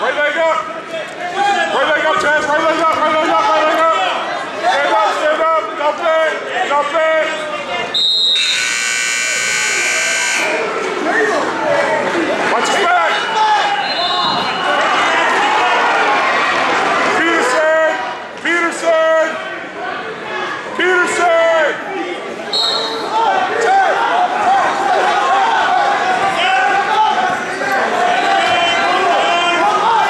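Gym scoreboard buzzer sounding for about two seconds, eight seconds in, over a crowd of spectators and coaches shouting in the hall.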